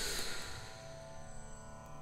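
Quiet background music of held, drone-like tones in an Indian devotional style, fading down over the first second and then sustaining softly.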